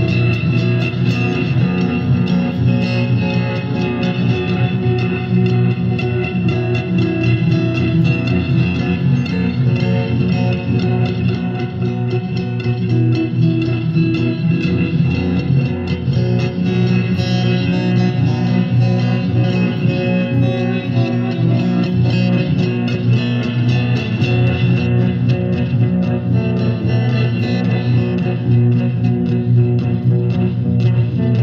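A guitar being played without a break, a steady run of picked and strummed notes with no singing.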